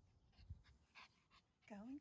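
A small dog panting faintly in short, quick breaths, with a low thump about half a second in.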